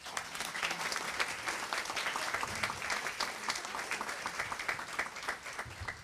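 Audience and panel applauding, many hands clapping steadily and tapering off slightly near the end.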